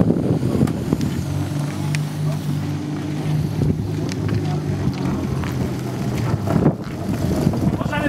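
A motor vehicle running with a steady low hum that sets in about a second in and fades out about six seconds in, with wind on the microphone.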